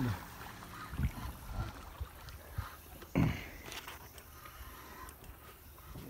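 Quiet open-air ambience on a boat on the water, with a few soft knocks and a single short spoken "yeah" about three seconds in.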